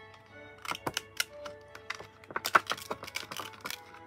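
Thin clear acetate gift box being popped open by hand: irregular crackles and clicks as the stiff plastic flexes along its pre-scored folds, over quiet background music.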